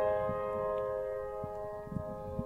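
Piano accompaniment: a chord struck just before, held and slowly fading.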